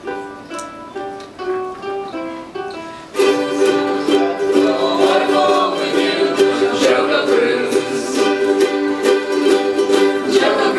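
A ukulele picks out an intro melody note by note, then about three seconds in a large group of ukuleles joins, strumming chords much louder.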